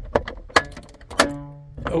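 Broken glovebox latch in a Volkswagen Beetle's plastic dash being pressed: a few sharp plastic clicks, then a short musical twang that rings out just after a second in, as the broken catch springs back without opening the glovebox.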